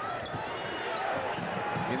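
Arena crowd noise during live college basketball play: a steady din of many voices, with faint shouts rising and falling through it.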